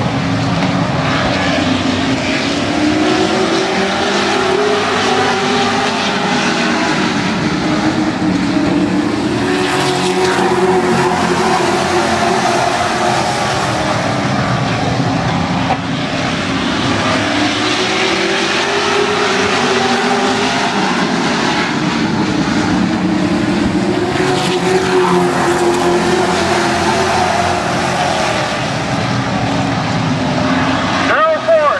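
A pack of late model stock cars racing on an oval track, many V8 engines running together at speed. The combined engine note rises and falls in long sweeps as the field circles the track.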